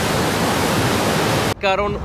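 Steady rushing noise, even and unbroken, that cuts off abruptly about one and a half seconds in, where a man starts talking.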